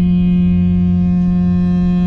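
Ship's horn of the passenger ferry M/V LiTE Ferry 2 sounding one long, steady, low blast over a low rumble.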